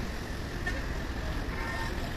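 Road traffic: a steady, even rumble of vehicles on a busy hill road.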